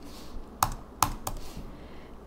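Three sharp clicks of computer keyboard keys being pressed, as highlighted lines of code are deleted.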